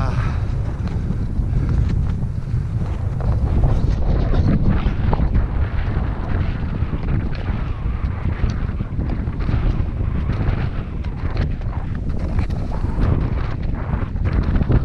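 Wind buffeting the camera's microphone in a steady low rumble, with irregular crunching footsteps in the snow.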